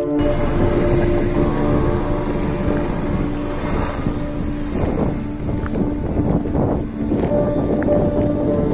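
Helicopter flying overhead with a bucket slung beneath it on a line, its rotor and engine making a loud, steady rumble.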